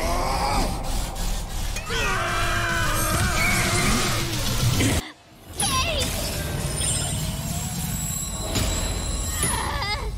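Animated fight-scene soundtrack: dramatic music and sound effects under wordless screams and roars, with a long strained yell between about two and four seconds in and a sudden brief drop-out a little past the middle.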